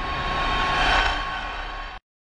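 Transition sound effect for an animated logo graphic: a whooshing noise that swells to a peak about a second in, then eases off and cuts off abruptly.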